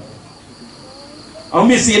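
A pause in a man's speech, filled by faint, steady high-pitched chirring of crickets in the background. His voice comes back about a second and a half in.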